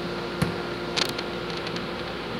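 Two light taps as thin laser-cut wooden tray parts are handled on a tabletop, about half a second and a second in, over a steady room hum.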